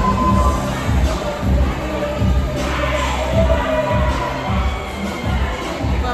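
Loud club music played over a sound system, with a heavy repeating bass beat and the voices of a crowd in the room.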